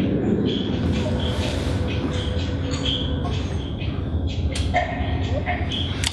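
A steady low rumble of room background noise, with faint voice sounds, most plainly about five seconds in.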